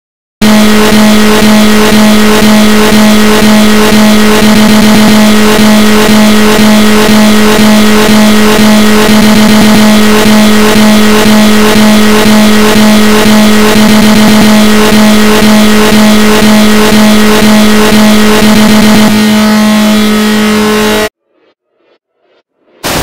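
A very loud, harsh, distorted electronic buzz at one steady pitch, pulsing about twice a second like a looped sample; it changes slightly near the end and cuts off suddenly about a second before the end.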